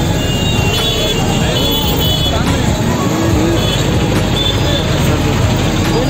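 Congested street traffic: auto-rickshaw and motorcycle engines running, with short horn toots and a crowd's voices mixed in.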